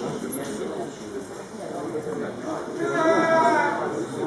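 Indistinct voices talking in a large, echoing hall, with one voice calling out in a long, drawn-out tone near the end.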